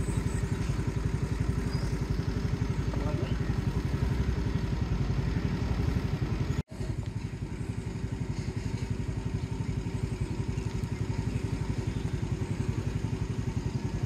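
An engine idling with a steady, rapid, even putter. The sound breaks off for an instant about halfway through.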